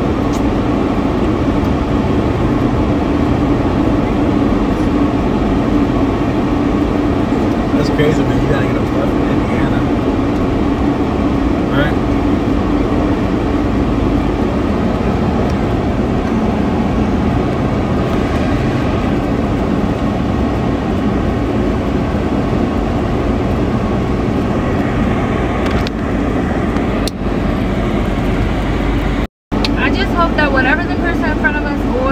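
Steady road and engine noise from a car driving slowly, heard inside the cabin; it cuts out briefly near the end.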